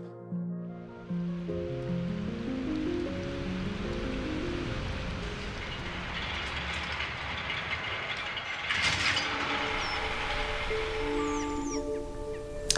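An old textile machine running: a steady mechanical clatter and hiss that starts about a second in and stops just before the end, with a couple of sharper clicks partway through. Soft background music plays at the start and comes back near the end.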